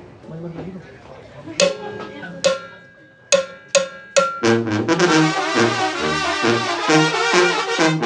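A Mexican tamborazo band starting a song: a few separate sharp drum and cymbal strikes, then from about halfway through the brass section of trumpets and trombones plays with the drums on a steady beat.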